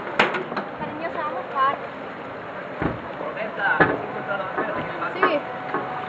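A heavy metal market-stall panel being hauled and set down on wet, flooded pavement, giving several sharp knocks, the two loudest in the middle, over voices talking in the background.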